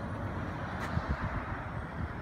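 Steady low rumble of road traffic, with a few soft low thumps about a second in.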